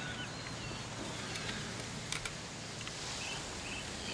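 Quiet rural outdoor ambience: a steady background hush with a few faint bird chirps, mostly in the first second and again about two and a half seconds in.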